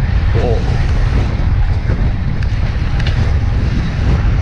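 Wind buffeting the microphone of a bike-mounted camera while riding a road bike into a strong headwind: a steady, loud low rumble.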